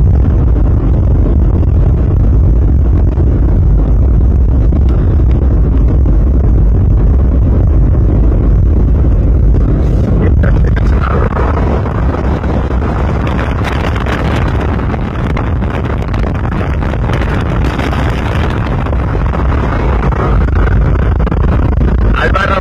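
Heavy wind buffeting on the microphone over the engine and tyre noise of a Toyota Land Cruiser 4x4 driving fast across a dry gravel lake bed. A hiss grows louder from about eleven seconds in.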